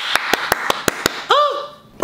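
A quick run of about eight hand claps in the first second, over a hiss, followed by a short voiced 'mm' sound.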